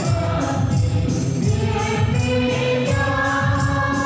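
A group of voices singing a hymn together, with long held notes.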